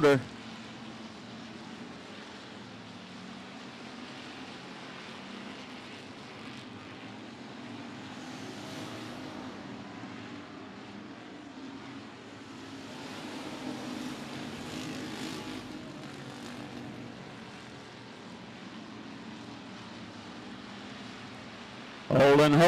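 Factory stock dirt-track race cars' engines running hard around the oval, heard at a distance as a steady drone that swells twice as the cars come by.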